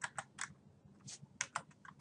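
Typing on a computer keyboard: about ten quick, irregular key clicks as an equation is entered into a graphing calculator.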